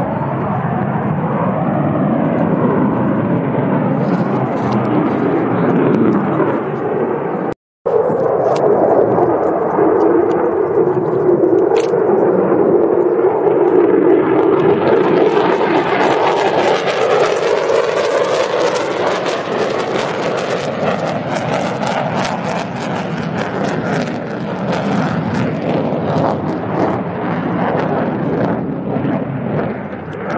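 Military fighter jet engine roar during a low display pass, continuous and loud, with a brief break about 8 s in. From about halfway it turns harsher and crackling as the jet passes close.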